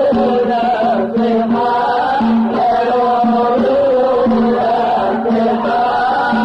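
Aleppine Islamic nasheed: a devotional chant sung in long, winding, ornamented melodic lines over a recurring held low note.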